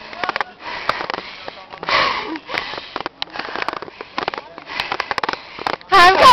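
Hard, hissing breathing of a person out of breath from running up a long flight of stone steps, a breath about every second, with scattered small clicks and knocks in between.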